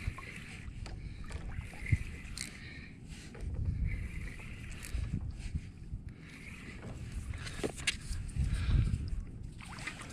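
Water slapping and knocking against a plastic fishing kayak's hull, with low thuds twice, during a fight with a hooked fish.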